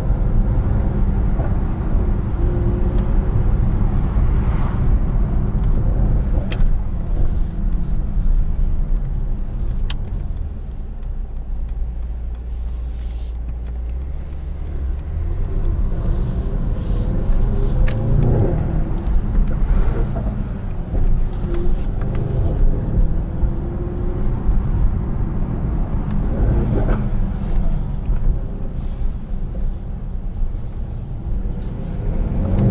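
Mercedes-AMG E63 S 4Matic+ twin-turbo V8 heard from inside the cabin in slow city driving, a steady low rumble whose pitch rises and falls several times as the car pulls away and eases off, with a steadier, quieter spell about halfway through.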